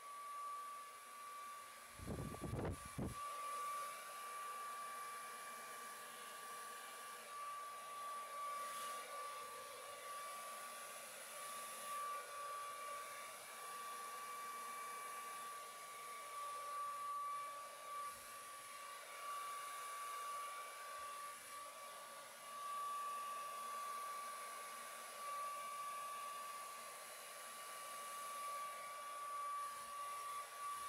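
Handheld blow dryer running steadily: rushing air with a steady high whine from the motor. There is a short low rumble about two seconds in.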